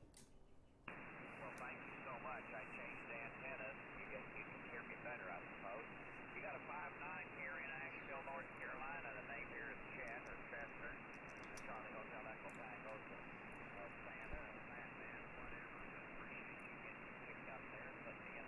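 Receive audio from a FlexRadio on 40-metre single sideband: steady band noise cut off sharply above about 3 kHz, with a weak station's voice faint under the hiss. The receiver audio comes in about a second in, after the operator unkeys.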